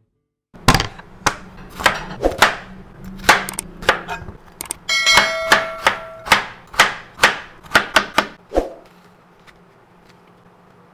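Chef's knife chopping through bitter gourd onto a plastic cutting board: a run of sharp chops about two a second, starting about half a second in and stopping near the ninth second. About halfway through, a brief chiming tone sounds over the chops.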